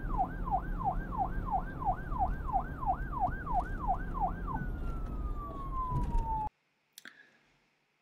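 A siren yelping, its pitch rising and falling about two and a half times a second over a low rumble. It then winds down in one long falling glide and cuts off suddenly about two-thirds of the way in.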